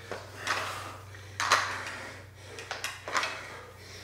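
Metal PowerBlock adjustable dumbbells knocking and clinking as they are set down on the floor and lifted again during squatting clean-and-press reps: a handful of irregular sharp knocks, the loudest about one and a half seconds in.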